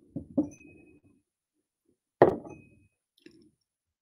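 Two quick light knocks over a faint rumble of handling near the start, then, about two seconds in, a single louder thump, as things are handled and set down on a desk.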